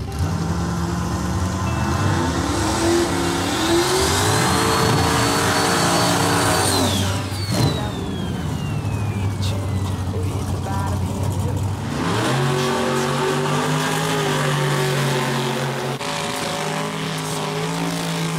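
Loud drag-racing engines revving hard during burnouts at the line. One engine climbs to high revs and holds them for a few seconds, then drops off with a long falling whine. About twelve seconds in, a second engine comes in and holds steady high revs.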